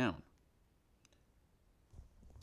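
A few faint computer mouse clicks, one about a second in and a couple near the end, as a shape is dragged into place on screen.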